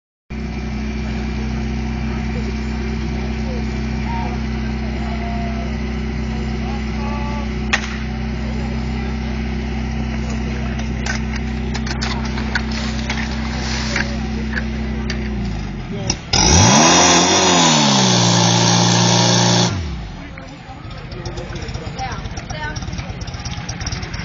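Engine of a portable fire pump running steadily for about fifteen seconds. Then its note sags, and a very loud rush of about three seconds follows, with a pitch that rises and falls.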